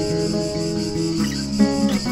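Acoustic guitar played fingerstyle, plucked notes ringing over a steady high buzz of cicadas.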